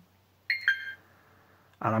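Flysky Noble Pro transmitter's touchscreen beeping as a menu item is selected: two quick electronic tones, the second lower in pitch and a little longer.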